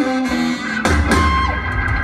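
A live southern rock band playing: a short run of single guitar notes, then a little under a second in, the full band comes in together on a loud, bass-heavy hit that rings on.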